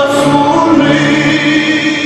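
Male voices singing a Romanian Christmas carol (colindă), holding long notes, with the melody stepping up in pitch a little under a second in.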